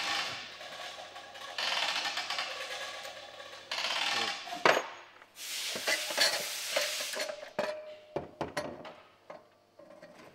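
Motorcycle exhaust parts and hand tools being worked, with several hissing stretches of a second or two, a sharp metallic clank just before halfway, and a run of short clicks and clinks near the end.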